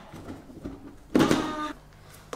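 Lid of a large plastic airtight storage container being handled and lifted off: faint handling noises, then a short plastic scrape of about half a second just past the midpoint.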